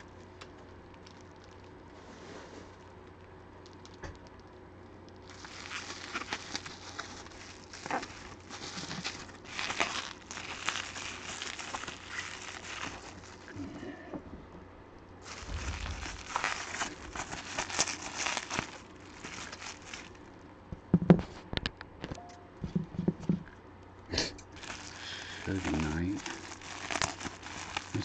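Plastic bubble wrap around a wooden baseball bat being handled and crinkled as it is unwrapped, in two long stretches of crackling with a few sharp clicks after them.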